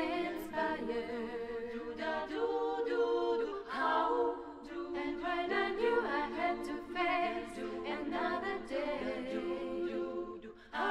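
Women's a cappella group singing in several-part vocal harmony, with no instruments.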